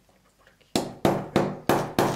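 A quick run of sharp knocks, about three a second, starting a little under a second in.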